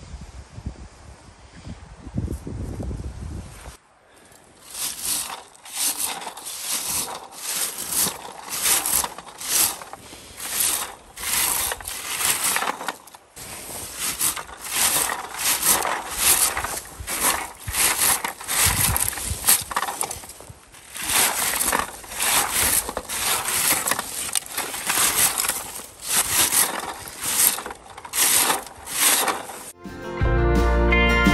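Red plastic berry picker raked through lingonberry shrubs, a rustling scrape of its tines through leaves and twigs repeated about one or two strokes a second, starting about four seconds in.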